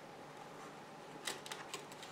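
A few faint, light clicks from the plastic collar plate of a vacuum cleaner dust bag being handled and set down on a digital kitchen scale, starting a little past the middle, after a quiet stretch.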